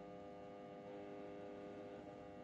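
Faint steady electrical hum made of several fixed tones, with nothing else happening: quiet room tone.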